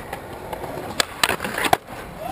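Skateboard wheels rolling on concrete, with several sharp clacks of the board on the ground about a second in and near the end, the last the loudest.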